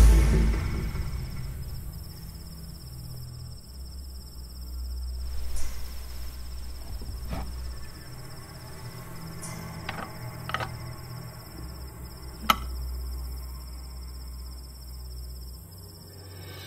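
Crickets chirping in a steady high trill over a low drone of background music, which fades down from louder music at the start. A few sharp clicks or knocks break in, the sharpest about twelve seconds in.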